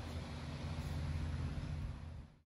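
A steady low mechanical hum under a light hiss.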